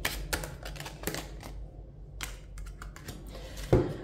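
Tarot cards being dealt from the deck onto a wooden table: a quick, irregular run of card snaps and taps, with one louder knock on the table near the end.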